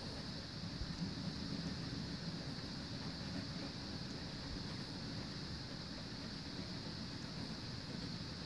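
HO scale coal hopper cars rolling along model railroad track: a faint, steady running noise with a light hiss.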